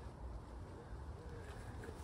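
A pigeon cooing faintly in the background, a couple of soft low coos over a low rumble.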